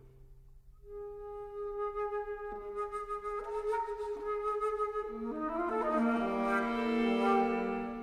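Flute and string trio playing contemporary classical chamber music. After a brief hush, the flute enters about a second in on a long held note. Further sustained lines join and the sound swells into a louder, fuller chord toward the end.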